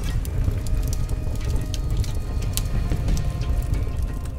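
Forest fire burning: a steady low rumble with many scattered crackles and pops, under background music.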